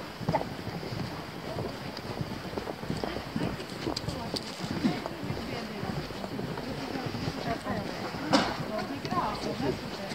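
Several people's footsteps on a boardwalk, an uneven run of hollow treads, with one sharper knock about eight seconds in. Voices of people talking come in near the end.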